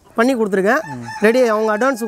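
A rooster crowing.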